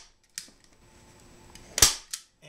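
Manual hand-squeeze staple gun firing staples through upholstery fabric into a chair seat: a small click about a third of a second in, then one loud, sharp snap near the end.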